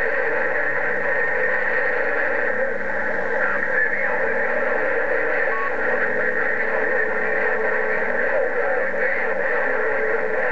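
President HR2510 radio's receiver on 27.085 MHz (CB channel 11) putting out steady band static and hiss, with faint steady whining tones in it, while no station comes through clearly.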